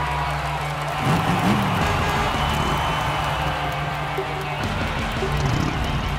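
Background music with sustained low notes, with a brief swooping sound about a second in.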